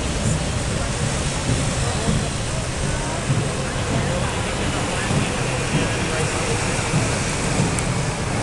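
Steady wash of city street traffic: cars, taxis and motorcycles passing through a wide intersection, engines and tyres blending into one even noise, with faint voices of people nearby.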